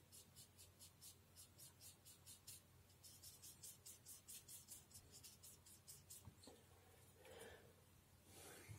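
Paintbrush bristles scrubbing quickly back and forth on paper, a faint scratchy stroking about four to five times a second. It pauses briefly about two and a half seconds in and stops a little after five seconds.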